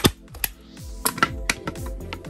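A manual staple gun fires once with a sharp, loud snap right at the start, driving a staple through upholstery fabric into a wooden stool plate. Lighter clicks and knocks follow over background music with a beat.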